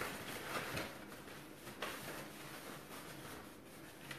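Quiet room with faint rustling and a few light clicks as a large cardstock paper flower is held up and handled.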